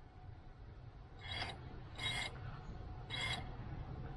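MEPS SZ2306 brushless quadcopter motor spun briefly at low throttle from the Betaflight motors tab, with a loose, unbolted propeller resting on it, giving three short rasping bursts. This is a motor direction test, and the motor is turning the wrong way.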